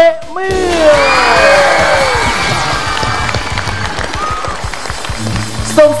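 Studio audience clapping and cheering under a short musical sting with falling tones. It starts about half a second in and fades before the host's voice returns near the end.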